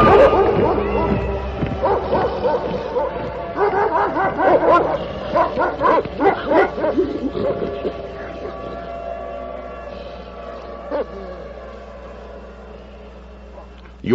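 Yelping, dog-like cries over a low hum, fading gradually until faint near the end, with a single short click about eleven seconds in.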